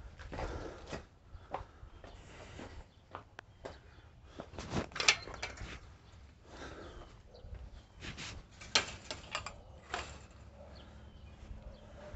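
Footsteps and handling of a chain-link fence gate: scattered metal clanks and rattles as the gate is gripped and opened, the loudest about five seconds in.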